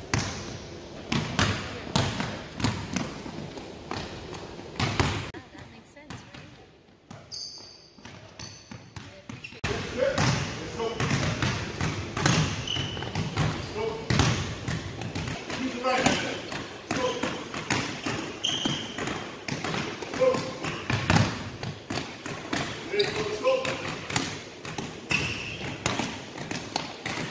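Basketballs dribbled on a hardwood gym floor: repeated sharp bounces, several balls at once in an irregular rapid patter, echoing in a large hall, thinning out briefly near the middle.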